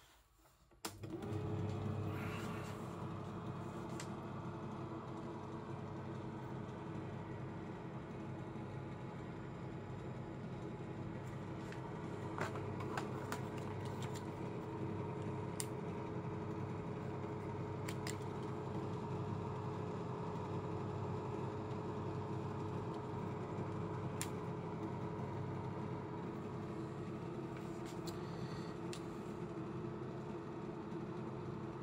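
Prestinox 680 Auto slide projector switched on: its cooling fan motor starts about a second in and runs with a steady hum and whir. A few faint clicks come through now and then.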